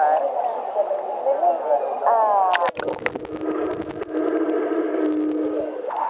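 Voices echoing in a pool hall, then a splash, and about three seconds of muffled underwater pool sound: bubbling and crackling over a steady low hum.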